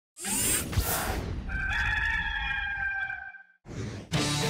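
Rooster crow sound effect in an animated team intro sting: a whooshing hit at the start, then one long crow lasting over a second, then a short rising swoosh near the end.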